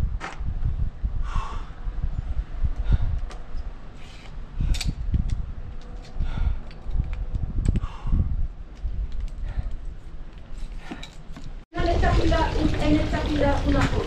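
Low rumbling wind noise with scattered light clicks and clinks as folding trail-running poles are handled and collapsed, under faint voices. Near the end, after a sudden break, water splashes steadily from a fountain spout into a stone trough.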